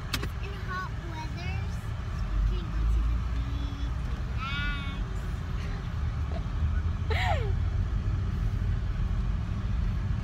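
Steady low road and engine rumble of a moving car, heard from inside the cabin. It is broken by a click at the very start and by two short high-pitched voice sounds about halfway through.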